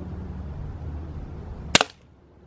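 A BB pistol fired once: a single sharp crack near the end.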